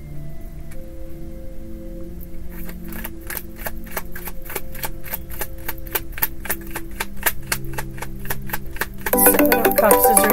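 Soft background music with a fast, even clicking from about three seconds in, roughly five clicks a second. Near the end a phone's ringtone melody starts, louder than the rest.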